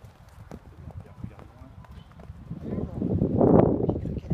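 A pony's hooves thudding on an arena's sand as it canters away, the beats faint and soft. A louder rushing noise builds over the last second or so.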